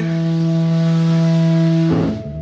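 A loud, steady held note from an amplified electric guitar rig, a single pitch sustained with no change. It cuts off just before the end.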